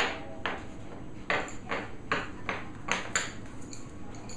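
Irregular metallic clinks and knocks, about two a second, from a stainless steel dog bowl knocking against the bars of a wire dog crate.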